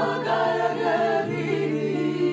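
Several women's voices singing a Georgian song together in harmony over a held low note, with an acoustic guitar accompanying.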